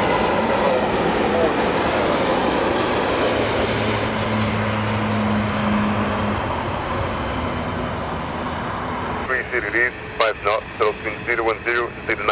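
Airbus A319 jet on landing approach: the steady rush and whine of its engines, easing off slowly over about nine seconds. From about nine seconds in, a voice speaks over the air traffic control radio.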